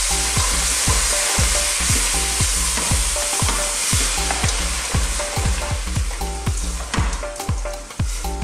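Frozen peas, onion and potato sizzling in hot butter in a stainless steel pot on medium-high heat, stirred with a wooden spoon. A steady sizzle throughout, with the spoon stirring the vegetables.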